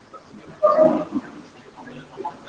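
A brief voiced sound from a person, held on one pitch for about half a second, picked up by the room microphone over faint background murmur.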